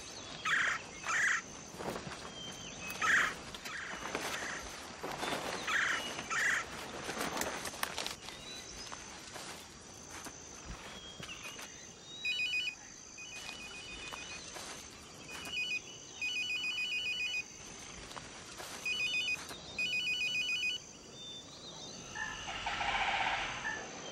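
A mobile phone's electronic ringer trilling in several short, uneven rings through the middle and latter part. Before the rings come sharp rustles of leaves and brush being pushed through, the loudest sounds here, over a faint steady high insect chirr.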